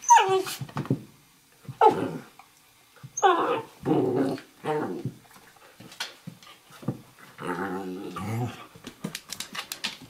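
A Eurohound puppy and a Nova Scotia Duck Tolling Retriever play-wrestling: a string of short growls and yelps about a second apart, several falling in pitch, then a longer growl a little before the end. It is play growling, fierce-sounding but not aggression.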